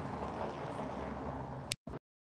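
Steady outdoor city-street hum of traffic and passers-by. Near the end a sharp click, then the sound cuts off to dead silence.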